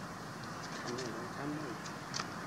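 A dove cooing, a few short low notes about halfway through, over a steady outdoor background noise.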